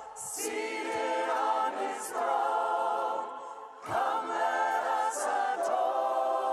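A man and a woman singing a worship hymn in harmony, sustained phrases with vibrato and choir voices joining, with little or no low instrumental backing. There is a brief break between phrases just before four seconds in.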